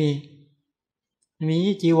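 Only speech: a man speaking Thai in short phrases, with about a second of silence between them.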